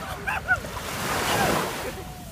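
Sea water washing and splashing in the shallows as a small wave breaks on the sand, swelling to a peak about a second and a half in. Brief bits of voices early on.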